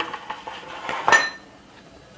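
A single ringing clink of cookware being knocked or set down, about a second in, with a short metallic ring after it. Soft handling noise comes before it.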